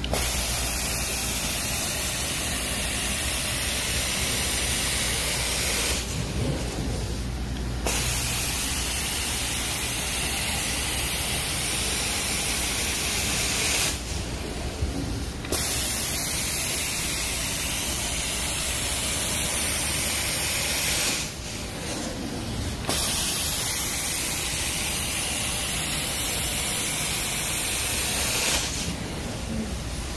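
Carpet-cleaning extraction wand spraying hot water onto carpet and sucking it back up: a loud, steady hiss over a low rumble. The hiss drops out briefly three times, about seven seconds apart.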